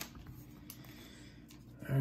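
Quiet handling of a stack of trading cards: a soft click at the start and a couple of faint card taps and slides over low room noise, with a spoken word starting right at the end.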